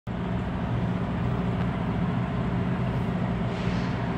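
Steady low drone of a running vehicle engine, even and unchanging.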